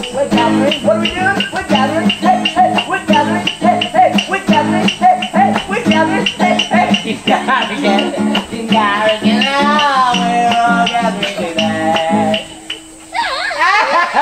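Acoustic guitar strummed in a quick, even rhythm while a voice sings along. The playing stops suddenly about twelve seconds in, and children shout and squeal just before the end.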